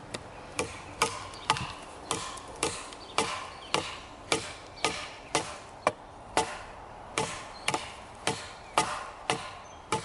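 Ka-Bar Becker BK2, a thick 1095 high-carbon steel knife, chopping into a branch: a steady run of sharp strikes into the wood, about two a second.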